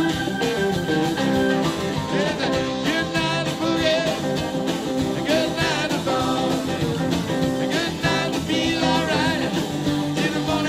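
A live band playing amplified through a PA: electric and acoustic guitars, bass guitar, drums and keyboard together in a full, steady groove, with lines that waver in pitch a few times.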